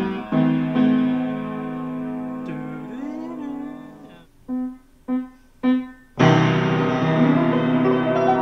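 Upright piano played by hand: held chords ring and fade over the first four seconds, then three short, separate chords, then a loud full chord a little after six seconds in that rings on.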